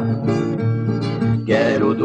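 Acoustic guitar playing a short instrumental fill in a sertanejo raiz (moda de viola) song, with the duo's singing coming back in near the end.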